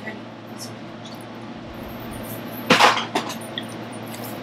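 Water poured from a plastic bottle into a metal measuring cup makes a quiet trickle. About three seconds in there is a brief, louder splash as the water goes into a stainless steel mixing bowl.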